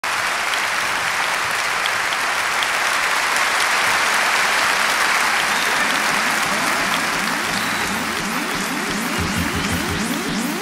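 Concert audience applauding. About six seconds in, a synthesizer comes in with a run of repeated rising sweeps that grow louder toward the end, opening the band's live performance.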